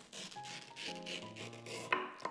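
A knife slicing through ripe, peeled mango flesh along the seed, a wet rasping scrape. Near the end there is a sharp knock as the blade comes through onto the cutting board. Background music plays underneath.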